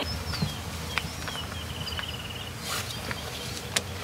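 Small birds chirping, with a short trill in the middle, over a low steady background. A few light clicks and crinkles come from a plastic zip bag being handled and sealed.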